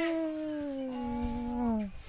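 A baby's long drawn-out vocal "aaah": one held note that slowly falls in pitch and stops just before the end.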